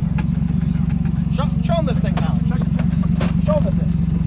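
Engine idling with a steady low drone that runs through the whole stretch, with faint voices in the background.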